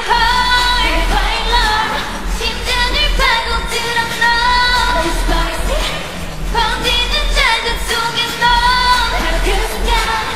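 Live female K-pop vocals sung on stage with the instrumental backing track removed, the voices gliding between held notes. A low bass pulse is left underneath.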